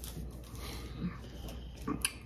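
A person's low grunting sounds after a swallow of wine, then a glass set down on the stone tabletop with a sharp click near the end, over a steady low hum.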